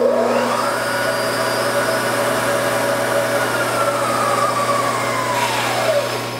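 Spindle motor and drive of a Supermax YCM-16VS knee mill running forward in high gear, on a machine with a spindle gearing/timing-belt fault. A whine rises as it comes up to speed, holds steady over a dense mechanical noise, then falls in pitch near the end as the spindle winds down.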